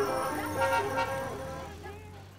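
Soundtrack of a grainy film excerpt: pitched voices or music over a steady low hum, growing fainter toward the end.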